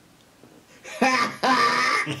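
A man laughing: two breathy bursts of laughter after a short quiet start.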